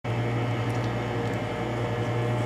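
Steady low mechanical hum with a faint hiss: the room's constant background noise, like a ventilation fan or air handler running.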